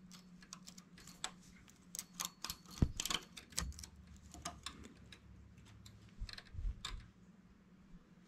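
Light irregular metallic clicks and ticks of a two-prong transfer tool and the machine's needles as stitches are lifted off and moved onto neighbouring needles of a knitting machine's needle bed. The clicks thin out near the end.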